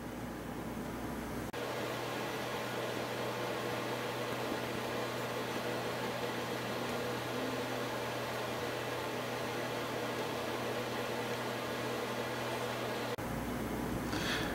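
Steady mechanical hum with an even hiss, like a running fan, that starts abruptly about a second and a half in and cuts off just before the end.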